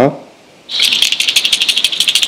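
The internal rattle beads of a Savage Gear Deep Diving Prey hard-bodied crankbait clicking as the lure is shaken by hand. A fast, even clatter that starts about two-thirds of a second in.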